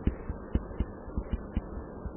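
A stylus tapping and knocking on a pen tablet while handwriting is written out: a string of irregular dull taps, about four a second, over a steady low electrical hum.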